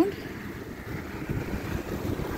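Wind buffeting the microphone outdoors, a low irregular rumble.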